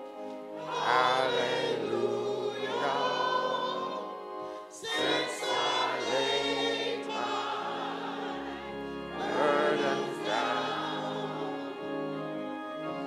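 Church choir and congregation singing a hymn together, phrase after phrase with short breaks between them.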